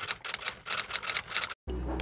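A rapid, irregular run of sharp clicks for about a second and a half, then an abrupt cut to a low steady hum.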